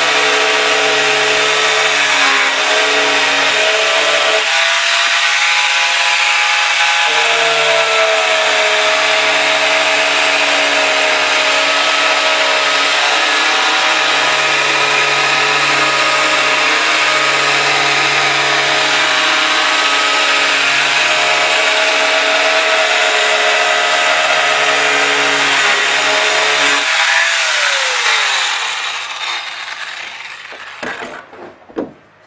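Angle grinder with a cutting disc running steadily as it cuts through a plastic drum, its whine shifting a little in pitch under load. Near the end it is switched off and winds down with a falling whine.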